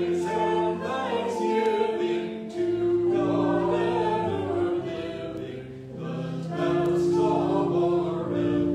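A man's and a woman's voices singing a sacred song together as a duet, with held notes that change every second or so.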